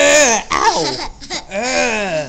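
A toddler laughing and letting out playful, high-pitched yells in two loud bursts, one at the start and one near the end, with a shorter call between them.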